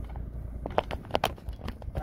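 A few sharp clicks and taps, bunched in the second half, over a low steady rumble inside a car.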